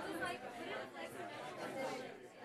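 Many students talking among themselves at once: a steady babble of overlapping conversations in a lecture hall, quieter than a lecturer's voice.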